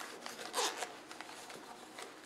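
Zipper of a small zippered carrying case being pulled open around its edge: a short rasp about half a second in, then fainter rubbing as the zip runs on.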